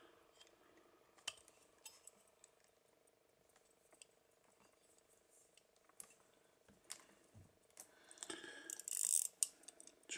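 Faint, scattered small clicks from handling a gold-plated pocket watch case with its back covers opened to show the movement, over a faint steady hum. Near the end there is a louder stretch of scraping clicks as the fingers work the case and crown.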